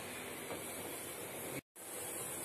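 Steady, low background hiss with no distinct sound events; it cuts out completely for an instant near the end.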